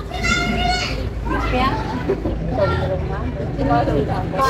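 A group of voices, mostly high-pitched women's voices, talking and calling out over one another in short, lively bursts.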